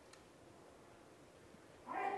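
Quiet hall room tone, then a brief, louder pitched squeak-like sound with a few stacked tones just before the end.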